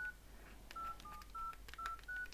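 Nokia 6234 keypad tones: five short two-note beeps in quick succession, one for each key pressed as digits of a service code are keyed in.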